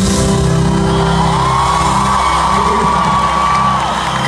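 Live sertanejo band playing through a concert PA, with sustained chords recorded loud from within the crowd. About a second in, a high note slides up and is held until just before the end.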